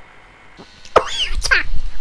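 A man's voice making loud, wordless exclamations from about a second in, with pitch sliding up and down.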